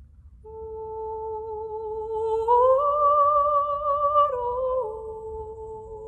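A woman's voice humming a slow Armenian lullaby melody without words, with vibrato. After a held note it rises to a higher one about two and a half seconds in, then steps down twice near the end.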